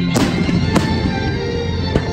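Two firework shells bursting in sharp bangs, the first just after the start and the second about half a second later, each with a short echoing tail, over loud show music.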